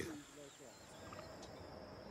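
Faint night ambience: a steady thin high whine with a soft haze beneath it, and a brief wavering animal call in the first second.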